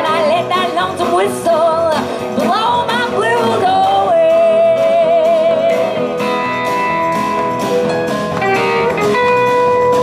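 Live band music: a woman sings wordless, wavering held notes over a strummed acoustic guitar. About six seconds in the voice gives way to an instrumental passage of long, steady held notes.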